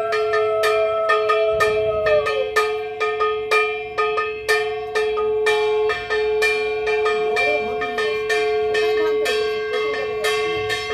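Puja bells struck in a steady rhythm, about two strikes a second, each stroke ringing on over a held metallic tone.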